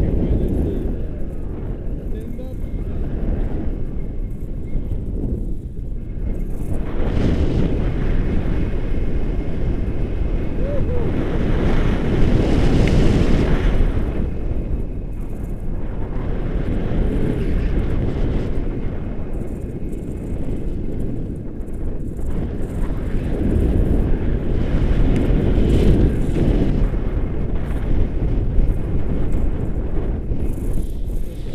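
Wind rushing over the microphone of a camera carried by a tandem paraglider in flight: a steady low roar that swells and eases every few seconds.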